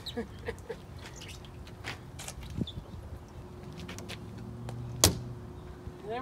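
A low motor hum comes in about three and a half seconds in, rising briefly and then holding steady. Light scattered clicks run throughout, and one sharp, loud click comes about five seconds in.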